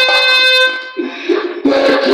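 A single sustained note with a horn-like, reedy tone from the stage band's electronic keyboard, cut off about two-thirds of a second in. After a brief lull the band's music starts up loudly again near the end.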